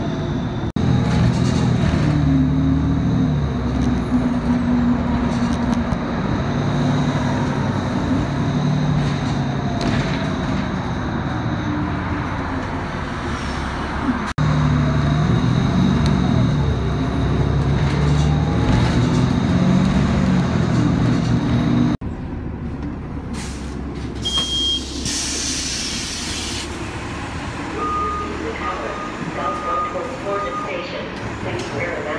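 City transit bus engine running while under way, its pitch rising and falling as the bus speeds up and slows. It turns quieter later on, with a short hiss of the air brakes releasing and a few short beeps near the end.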